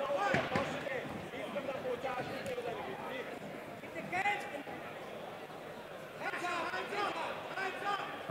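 Indistinct voices of the arena crowd and people around the cage calling out, faint and scattered, beneath a pause in the commentary.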